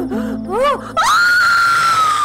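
Short wavering cries, then about a second in a woman's long, high-pitched scream, held steady, over a film score of low sustained notes.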